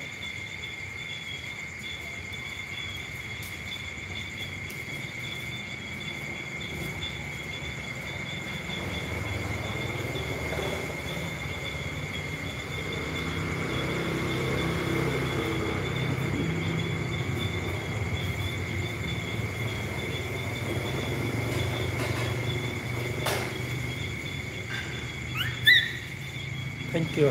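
Insects calling steadily at night, a continuous high two-pitched trill, over a low rumble that grows in the middle. Near the end, a short high rising squeak.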